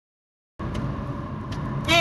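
Dead silence for about half a second, then a steady low background rumble with a faint high steady tone. A man's voice starts right at the end.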